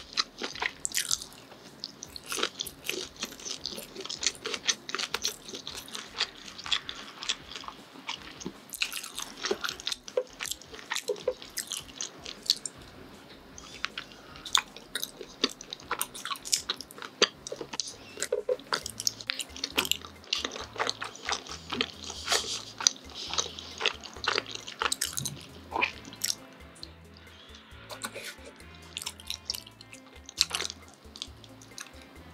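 Close-miked wet chewing of chewy rice-cake tteokbokki coated in thick spicy sauce, with many short sticky mouth clicks and smacks.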